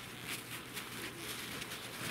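Paper towel rubbing and rustling against a small electroformed copper ring held in the fingers: soft, irregular scuffing.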